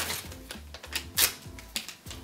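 A few sharp clicks and rustles as hangover capsules are taken out of their packaging, the loudest right at the start and about a second in. Faint background music with a low bass line runs underneath.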